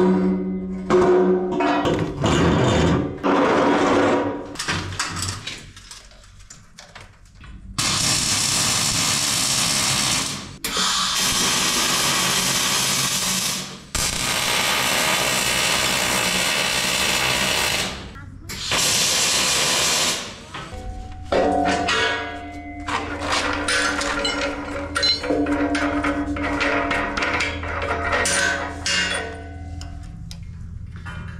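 Wire-feed welder welding steel in four bursts of a few seconds each, a steady hiss that stops and starts between about eight and twenty seconds in. Before it there is a short laugh, and after it background music with a ticking beat.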